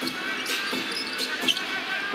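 Basketball dribbled on a hardwood arena court, a few sharp bounces with the loudest about a second and a half in, over steady arena crowd noise.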